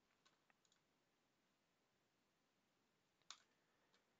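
Near silence, broken by a few faint short clicks in the first second and one slightly louder click about three seconds in.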